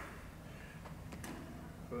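Two faint sharp clicks a little after a second in, from hands grabbing a steel mesh fence panel to hang for a pull-up, over quiet outdoor background.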